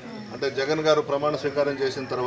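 Speech: people talking, most likely in Telugu.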